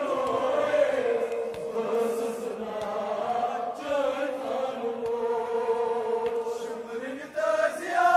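A crowd of men chanting together in long, drawn-out held notes, a religious mourning chant in which the voices glide slowly from note to note.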